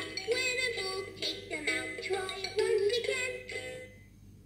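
Fisher-Price Laugh & Learn Count & Learn Piggy Bank playing a song through its built-in speaker: a recorded voice singing a melody over backing music, stopping near the end.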